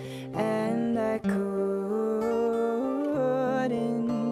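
A woman singing a slow, gentle song in long held notes over acoustic guitar.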